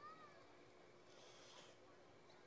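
Near silence: faint room tone with a low steady hum. Right at the start there is a brief faint squeal that rises and falls in pitch, and about a second in a faint soft rustle.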